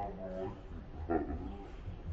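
People talking, with a short, louder vocal sound about a second in.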